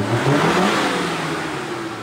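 Modified Maruti Gypsy's four-cylinder petrol engine revving hard under load as it climbs a muddy slope, over a loud rushing noise. The engine note slowly falls and the level eases through the second half.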